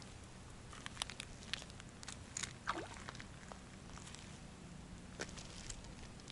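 Faint footsteps on a pebbly shore: scattered light crunches and clicks of stones underfoot, with one short sound falling in pitch around the middle.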